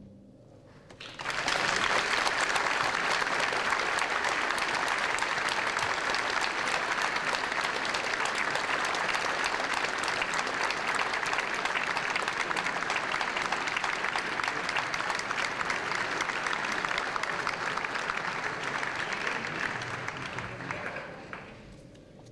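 Concert-hall audience applauding: the clapping starts about a second in, right after the orchestra's closing chord has died away, stays steady and dense, and dies out near the end.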